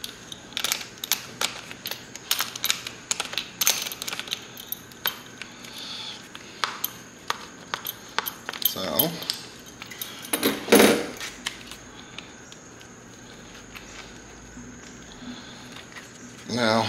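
Irregular small metallic clinks and taps of hand tools, bolts and a plastic light housing being handled on a workbench, thickest in the first half. A man's voice is heard briefly twice, about nine and eleven seconds in.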